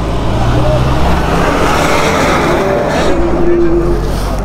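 Motorcycle engine running as the bike pulls away from a stop, with wind rushing over the microphone that builds about halfway through as it gathers speed.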